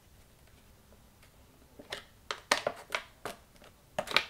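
Clear plastic blister insert flexed and clicking as a vinyl Funko Pop figure is popped out of it. After a quiet first couple of seconds come several short, sharp plastic clicks and crackles.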